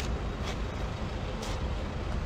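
Steady low rumbling background noise with a couple of faint clicks.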